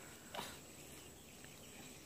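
Faint outdoor ambience by a pond in light rain: a soft even hiss under a thin, high steady whine, with one brief soft sound about half a second in.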